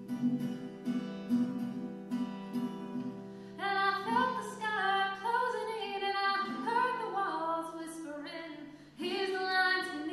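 A woman singing to her own acoustic guitar: strummed chords alone for about the first three and a half seconds, then her voice comes in over the guitar, breaks off briefly near the end and comes back.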